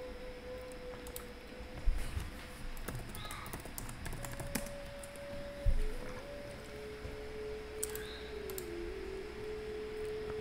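Faint clicking of a computer mouse and keyboard, with two louder knocks about two seconds in and just before six seconds. Under it runs a quiet held tone that steps between a few pitches.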